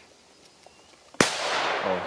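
A small Hestia 'Super Petardy' firecracker exploding about a second in: one sharp bang followed by a long echoing tail.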